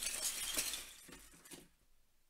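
The plastic pieces of a burst 22x22 Rubik's cube clattering and settling across a desk in a dense rattle of small clicks. The rattle dies out about a second and a half in.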